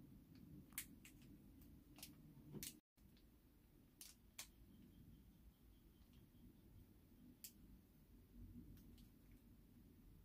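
Near silence with a few faint, scattered ticks from fingers working open a small packet, and a brief total dropout a little before three seconds in.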